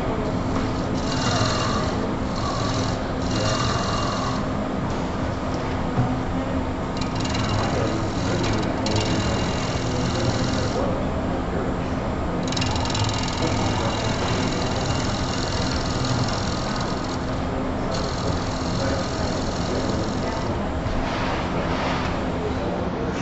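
Wood lathe running with a steady hum while a long-handled gouge hollows the inside of a spinning natural-edge wood vase blank. The cutting comes as several hissing passes of a few seconds each with short breaks between, the last ending shortly before the end.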